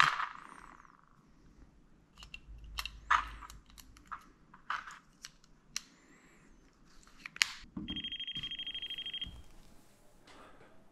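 Plastic clicks and handling of a red pen-style non-contact voltage tester as it is opened and worked by hand. About eight seconds in, the tester gives a high, fast-pulsing electronic beep for about a second and a half, showing that it is powered and working.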